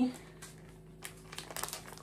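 Thin clear plastic bag crinkling as it is handled in the hands, a scatter of soft crackles that thicken about a second and a half in.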